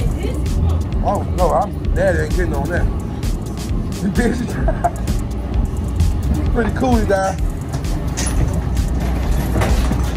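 Background music mixed with voices calling out and exclaiming, over a steady low rumble.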